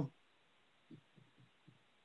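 Near silence on a video-call line, broken by four faint, short low thuds between about one and two seconds in.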